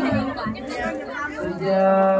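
A voice singing a Sundanese sawer chant in long held notes. One note ends just after the start, a short stretch of people chattering follows, and a new, lower note is taken up about a second and a half in.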